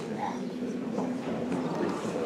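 Indistinct voices of people talking in a room, with a few light clicks and knocks.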